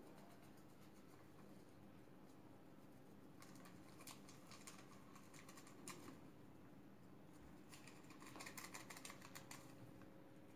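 Faint crinkling and light tapping of two small paper sachets of vanillin powder being shaken empty over a mixing bowl, in two spells, the first a few seconds in and the second near the end.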